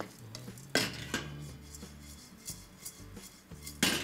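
Wooden spatula stirring and scraping spices and lentils as they dry-roast in a wok, with two sharp knocks on the pan, about a second in and just before the end.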